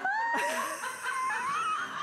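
A woman laughing in one long, high-pitched squeal that wavers and drifts upward, with no words.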